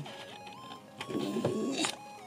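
Camera lens zoom motor whirring as the lens zooms in, with a couple of clicks, under soft background music.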